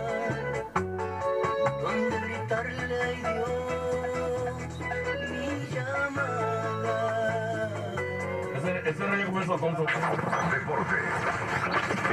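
Music from a radio playing inside the vehicle's cab, with a strong bass line; the sound gets busier near the end, where a voice comes in over it.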